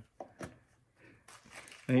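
A brief lull with two short, faint clicks and light rustling from handling a small gift and its wrapping, then a woman's voice starts near the end.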